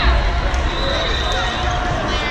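Volleyball being played in a large gym, with the crowd's chatter throughout. A dull thud of the ball comes at the start, and a thin high tone holds for about a second in the middle.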